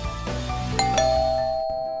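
Two-note ding-dong doorbell chime about a second in, a higher tone then a lower one that rings on, over background music that cuts out shortly before the end.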